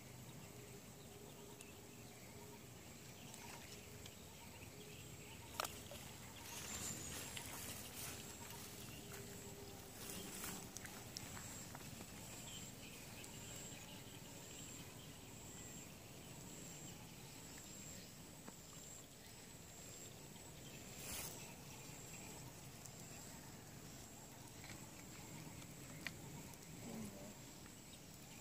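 Quiet outdoor ambience with a steady high-pitched insect drone, a few soft rustles and a couple of sharp clicks.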